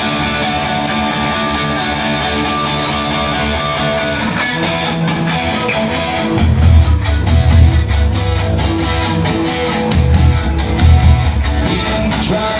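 Live rock band playing the song's intro through a loud venue PA: electric guitar holds sustained, strummed chords, then bass and drums come in about six seconds in with a heavy low beat.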